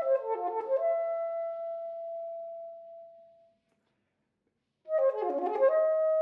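Solo soprano saxophone: a quick run of notes settles onto a long held note that fades away to silence. After about a second of silence, another quick flurry of notes leads into a new held note near the end.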